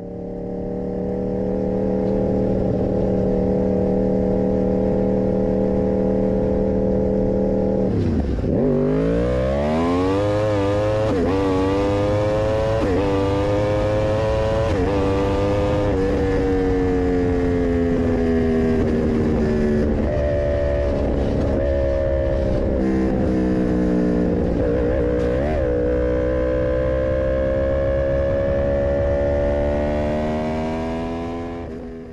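Motorcycle engine at high, steady revs. About eight seconds in the revs drop sharply and then climb through several quick gear changes, each a brief dip in pitch, as the bike accelerates. It holds at cruise, eases off, then rises slowly again near the end.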